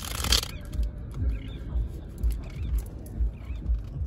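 Wind buffeting a phone microphone outdoors: low rumbling gusts that come and go every second or so, with a short burst of hissing noise at the very start.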